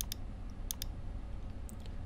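A few short clicks of a computer mouse: one at the start, a pair just under a second in, and another pair near the end, over a faint low room hum.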